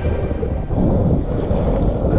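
Strong gusty wind buffeting an action camera's microphone: a steady, low, muffled rumble.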